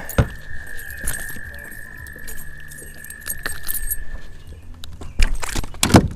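Metallic jangling and clicking of a spinnerbait's blades and hook, with handling knocks against the kayak, busiest and loudest near the end. A faint steady high whine runs underneath and stops a little before the end.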